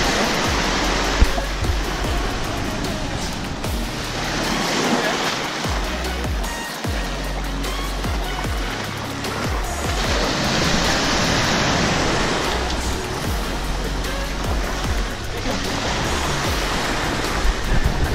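Surf breaking and washing up a sandy beach, swelling and fading every few seconds, under background music with a steady low bass.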